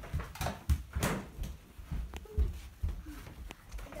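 Footsteps and handling knocks of people walking across the floor while carrying a hand-held camera: a run of irregular short thumps, two or three a second.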